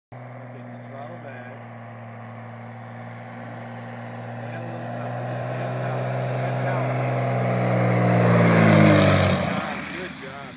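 Single-engine high-wing light airplane on landing approach, its propeller engine droning steadily and growing louder as it comes in low. Near the end it passes close by at its loudest, the pitch dropping as it goes past, then it fades as the plane rolls out on the grass strip.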